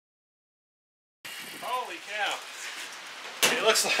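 Steady rain hiss begins abruptly about a second in, after dead silence. Two short pitched vocal sounds follow, then a man laughs loudly near the end.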